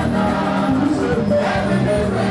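Church choir singing a gospel song live, many voices together, amplified through handheld microphones and a PA system.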